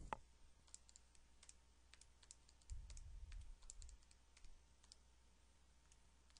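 Near silence, with faint scattered clicks and a soft low rumble about three seconds in.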